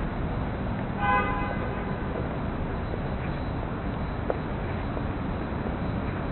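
Steady city traffic hum with one short vehicle horn toot about a second in.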